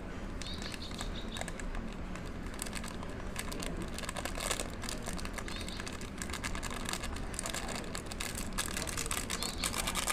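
Eno fruit salt powder pattering into a glass beaker while its sachet crinkles in the fingers as it is shaken, an irregular run of small crackles that gets denser near the end.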